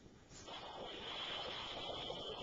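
A small battery-powered noise-making toy, set off when a butter knife touches the tin foil on a running plasma ball, sounds a steady high-pitched electronic tone starting about half a second in. The tone is faint and distorted, 'kind of screwed up'.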